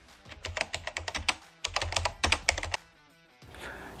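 Rapid computer-keyboard typing clicks in two quick runs with a short break in the middle: a typing sound effect for text being typed onto the screen.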